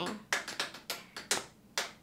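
A steady beat tapped out by hand: a run of sharp taps, about two to three a second.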